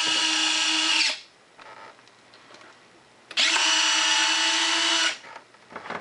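Electric retractable landing gear (Durafly DH Vampire replacement retract set) on a foam-board RC jet, whining steadily as the gear cycles. One run ends about a second in, and a second run of nearly two seconds starts about halfway through.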